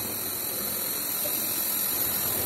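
Steady hiss of compressed air from sandblasting equipment, an even rushing noise with no pauses or strokes.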